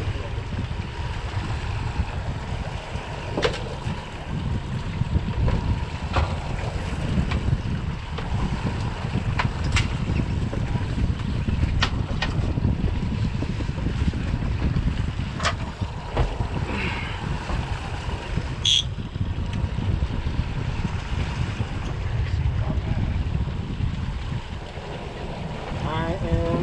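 Twin Mercury outboard motors running at slow trolling speed, mixed with wind on the microphone and water washing along the hull, with a few short sharp clicks scattered through.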